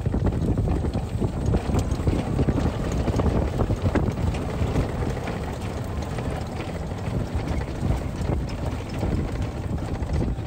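Wind buffeting the microphone in a steady, gusty low rumble, mixed with the running of a golf cart driving along the course.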